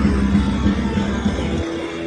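Rock band playing live through a PA, with distorted electric guitars, bass and drums, captured on an audience tape. About one and a half seconds in, the drums and bass stop and sustained guitar tones ring on as the song ends.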